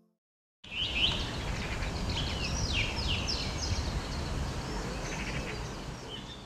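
Outdoor birdsong, a run of quick falling chirps and trills, over a steady low background rumble. It starts suddenly after a brief silence.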